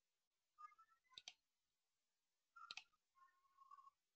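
Near silence with a few faint clicks in quick pairs, about a second in and again near three seconds in, like a computer mouse being clicked. A faint steady tone sounds briefly near the end.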